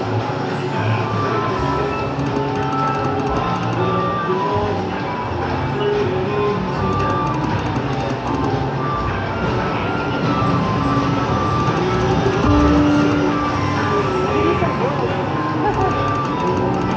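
Casino floor din: several video slot machines playing overlapping electronic jingles and short chiming tones, with a murmur of background voices.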